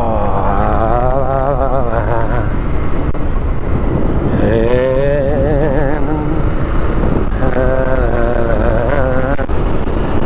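Motorcycle engine heard from an onboard camera over a steady wash of wind and road noise. Its pitch falls as the bike slows into a bend, rises again as it accelerates out, and holds fairly steady near the end.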